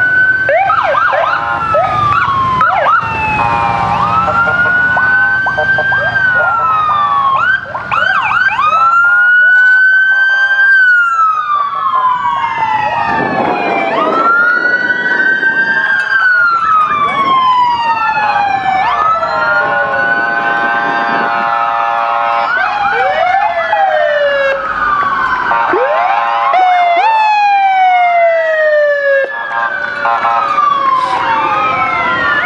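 Several police sirens sounding at once from passing motorcycles and a cruiser. Slow rising-and-falling wails overlap with fast yelps, and long steady horn blasts come in several times.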